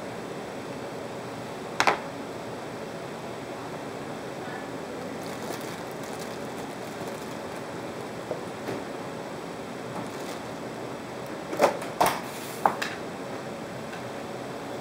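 Plastic bag of baby carrots being handled and opened, crinkling faintly, with a few sharp knocks: one about two seconds in and three close together near the end.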